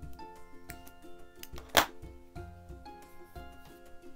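Background music with a steady beat, broken about two seconds in by one sharp metallic click from small embroidery scissors.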